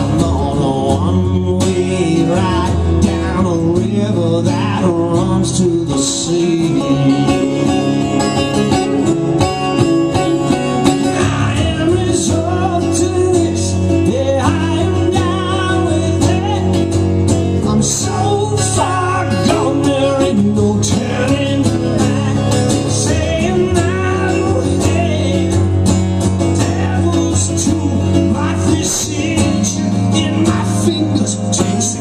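Two acoustic-electric guitars, one of them nylon-string, played together live in an instrumental passage with a steady, continuous sound.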